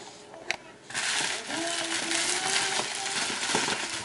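Plastic poly shipping mailer being pulled open and handled, crinkling and rustling. A dense crackly rustle starts about a second in and carries on almost to the end.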